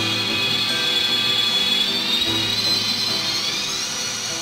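Live band music with geomungo (Korean zither): a dense, noisy drone with a high whine that glides upward near the end, over held low notes.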